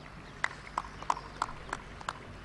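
Footsteps: five sharp, evenly spaced steps, about three a second, starting about half a second in.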